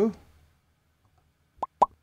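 Two short, sharp pop sound effects close together near the end: the audio of an animated 'Subscribe' overlay popping onto the video.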